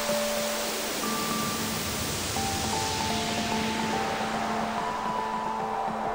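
Ambient Berlin-school electronic music played on synthesizers: a hissing wash of filtered noise under a held low note, with short synth notes stepping in a sequenced pattern above it. The noise wash dulls toward the end.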